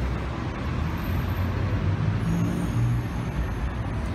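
Steady low rumble of road traffic, with a few faint low tones briefly past the middle.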